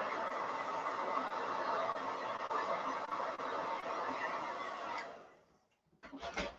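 Handheld hot-air dryer blowing steadily to dry wet paint on a wooden cutout, then switched off a little after five seconds in.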